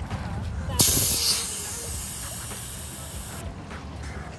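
Compressed air rushing out of an inflatable paddle board's valve as the valve is pressed open to deflate the board: a click about a second in, then a loud hiss that stops abruptly about two and a half seconds later.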